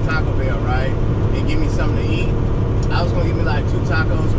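Steady low drone of a semi-truck's engine and road noise heard inside the cab at highway speed, with a voice talking over it.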